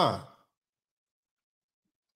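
A man's voice trailing off at the end of a drawled phrase, its pitch falling, then cut to dead silence within the first half second.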